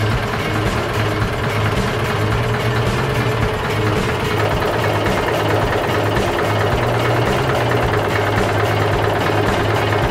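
Scania 141's 14-litre V8 diesel idling with a steady, even drone; its tone shifts slightly about four seconds in.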